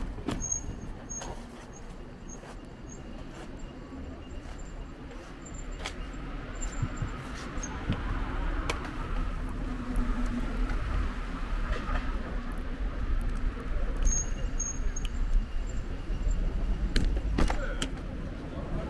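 Urban street ambience with distant road traffic: a steady low rumble that grows louder about halfway through, with a faint hum and a few light clicks.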